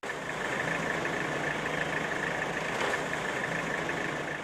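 Steady background noise of a vehicle engine running, with a thin, steady high-pitched tone over it.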